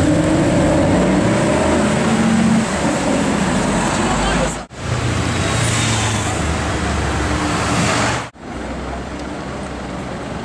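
Mercedes-Benz SLS AMG Roadster's V8 running as it drives along a busy street, amid traffic noise. The sound cuts off abruptly twice, about four and a half and eight seconds in, to other stretches of street traffic, the last one quieter.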